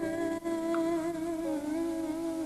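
Pop song outro: a female voice holds one long wordless note, slightly wavering, over soft backing music.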